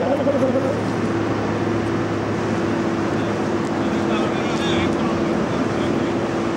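A steady engine or machinery drone with a constant low hum and one held tone, unchanging throughout, with faint voices in the background near the start and again about four seconds in.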